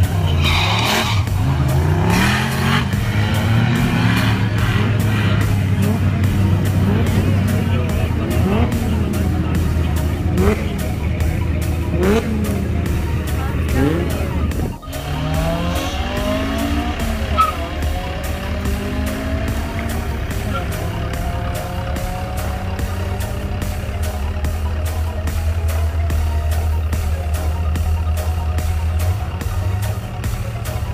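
Rock music with a steady beat plays over drag cars launching and accelerating down the strip, their engines rising in pitch again and again through the gears. The sound drops out briefly about halfway through.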